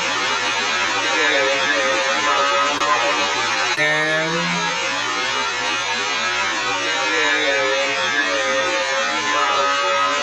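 Indistinct, muffled voice sounds over a steady, loud hiss, with no words that can be made out.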